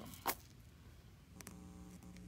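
Faint clicks from handling a tablet, then a short, steady low hum lasting about a second near the end.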